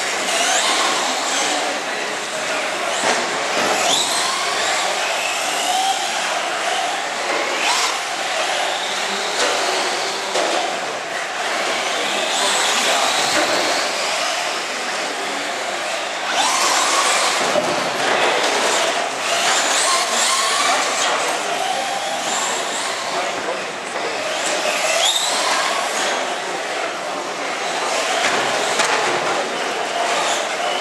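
Several radio-controlled cars, among them a Traxxas Slash 4x4 short-course truck, running around an indoor track, their electric motors whining up and down in pitch as they speed up and slow down. People talk in the background throughout.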